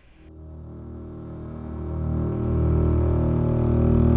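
A low, sustained synthesized drone made of several steady tones, swelling from faint to loud over the first two to three seconds and then holding.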